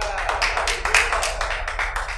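A few people clapping in quick, dense claps after a song ends, with a short voice call at the start.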